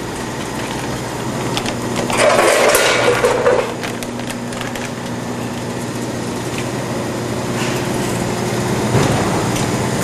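Running packaging-line machinery (bucket elevator, combination weigh scale and band sealer) with a steady hum and several steady tones. About two seconds in, a loud burst of noise lasts about a second and a half.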